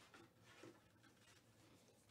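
Near silence: room tone, with two faint brief sounds in the first second.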